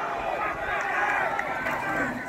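Football players and sideline teams shouting over one another as a play runs, many overlapping voices calling and yelling at once.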